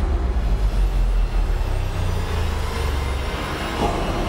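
A deep, steady low rumble.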